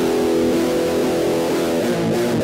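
Instrumental passage of a darkwave rock song: sustained electric guitar chords over bass, the chord changing near the end.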